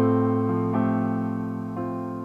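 Electric piano played through a Roland KC keyboard amplifier: slow, held chords over a low bass note, with the chord changing a few times.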